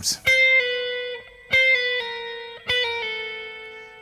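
Electric guitar playing brush-type pull-offs: three short phrases, each a picked note followed by a few notes stepping down in pitch as the fretting fingertips brush off the string. The notes ring and fade between phrases.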